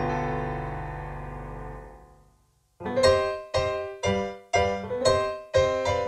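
Music: a held keyboard chord fading out over about two seconds, a brief silence, then a keyboard starting a bouncy rhythm of short chords about two a second.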